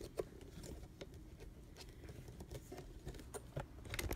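Handling noise of a phone camera being moved and repositioned: faint scattered clicks and light rustles, with a small cluster of clicks near the end.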